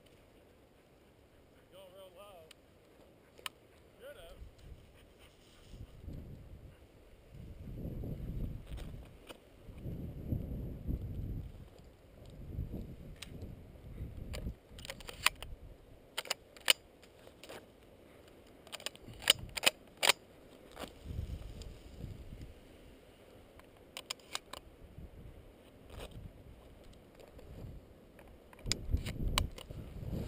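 Footsteps through dry tall grass and brush, with stems rustling and snapping against legs and gear, and low rumbles of wind or handling on the microphone. A run of sharp crackles and snaps comes in the middle stretch.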